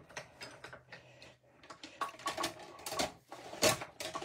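Hand-cranked die-cutting machine being turned, the plate sandwich with die and cardstock rolling through its rollers: a series of irregular clicks and knocks from the crank mechanism, more of them in the second half.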